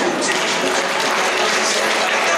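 Steady applause from an audience in a large hall, with voices underneath.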